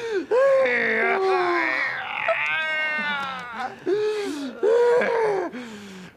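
A man groaning and crying out in pain: a string of about six short moans, each rising and falling in pitch.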